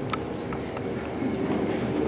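Steady background rumble and hiss of a large hall, with a faint click just after the start.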